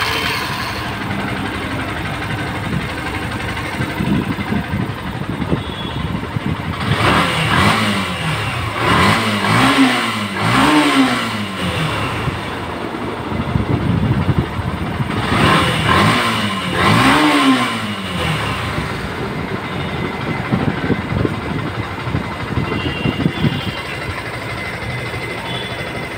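Yamaha FZ V2's 149 cc air-cooled single-cylinder fuel-injected engine running steadily, blipped up and down on the throttle: a run of quick revs about eight to eleven seconds in and two more around sixteen to seventeen seconds. It runs again now that the fault stopping fuel from reaching the engine has been fixed.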